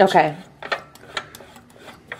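Toothed burr-adjustment ring of a Rancilio Kryo 65 espresso grinder being turned by hand to unscrew it, giving a few scattered light clicks.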